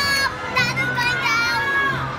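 A young boy's voice, talking or calling out in bits, with other children's voices around it.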